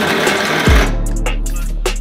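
Background music with a steady beat: kick drum and a held bass line, with a rushing noise swell through the first second.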